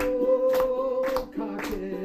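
A man singing to his own strummed ukulele, holding one long note for about the first second before the melody moves on. Hands clap along on the beat about twice a second.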